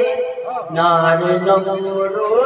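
A man's voice chanting a line of a sermon in a drawn-out, melodic sing-song delivery through a microphone. He takes a short break about half a second in, then holds a long sustained note.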